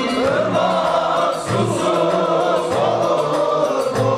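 A group of men singing a Çankırı folk song (türkü) together in unison, their voices wavering through the melody line.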